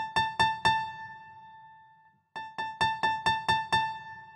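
Yamaha Montage synthesizer's Upright Piano preset played through a mixer: the same high note struck four times in quick succession and left to ring out, then a faster run of about seven repeated strikes starting about two and a half seconds in.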